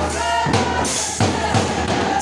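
Manipuri Holi folk music: voices singing together over a hand drum beaten in a steady rhythm, about three strokes a second.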